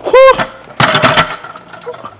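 A man's short, high-pitched shout of effort and triumph right after a heavy barbell bench press set. It is followed about half a second later by a loud, breathy exhale-like cry.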